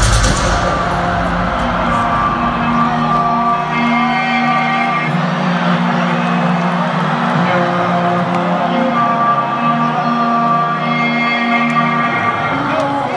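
Live concert music over an arena PA: held chords and a sustained bass line with slow melodic glides, under the steady noise of a large crowd with scattered whoops.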